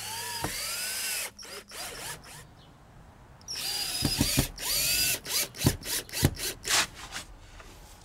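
Cordless drill driving screws through a vinyl fence post into the fence rails: a short run at the start, then after a pause a longer run with a high whine and a quick series of sharp clicks before it stops.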